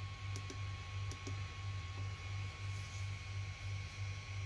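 Low hum that swells and fades about three times a second, with a faint steady high tone over it and a few soft clicks in the first two seconds.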